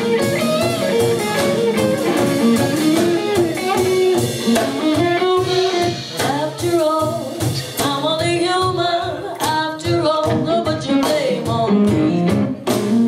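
Live band playing a song: a woman singing lead over strummed acoustic guitar, electric guitar and drum kit.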